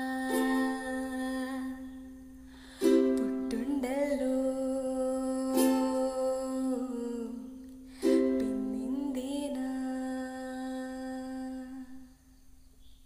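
Ukulele chords strummed one at a time, every few seconds, and left to ring, with a woman's voice singing over them. The last chord dies away near the end.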